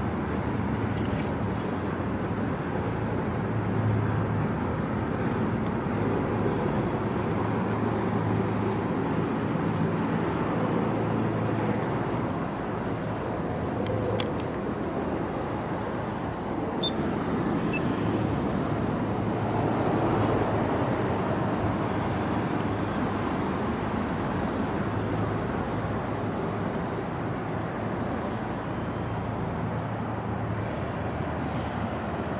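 Steady city street traffic noise with a low, steady hum underneath.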